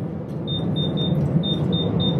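Electric pressure cooker's control panel beeping as its cooking time is set: a run of short, high-pitched beeps, about four a second, starting about half a second in.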